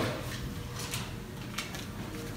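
Room noise in a hard-floored room with a few soft, scattered clicks.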